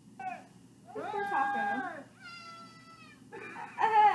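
Three cat-like cries from an animal in a meme clip, played through a TV's speaker: a short falling one, a longer one that rises, holds and falls, and a higher, steadier one that trails off.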